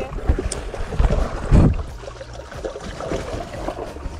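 Muddy pond water splashing and sloshing close up, with rumbling handling noise and a heavy low thump about one and a half seconds in.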